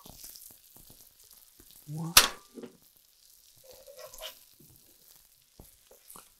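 Hot oil sizzling faintly in a skillet as fried crab cakes are lifted out with a spatula, with one sharp knock just after two seconds in.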